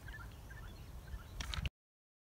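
Wind rumbling on a phone microphone outdoors, with faint scattered bird calls. A few handling knocks come near the end, then the sound cuts off abruptly to silence.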